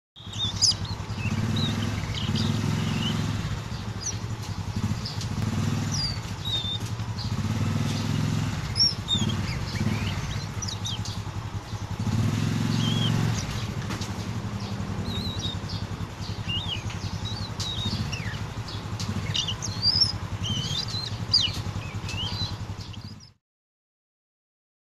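Short, high chirps and calls of a juvenile oriental magpie-robin (kacer), scattered throughout, over a low engine drone that swells and fades several times. The sound cuts off suddenly near the end.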